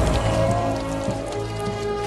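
Cartoonish vomiting: a continuous gushing, splattering stream of vomit hitting the pavement, over background music.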